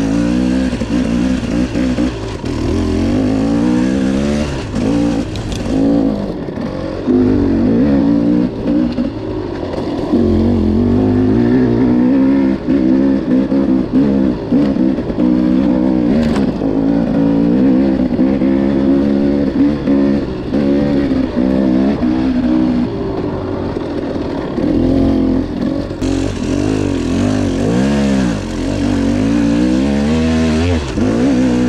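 Enduro dirt bike engine under constant throttle changes, heard from on the bike, revving up and falling back again and again as it climbs and picks its way along a rough trail.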